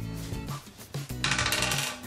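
Background music with a small game die shaken in cupped hands and rolled onto a marble tabletop, a short bright clatter about a second in.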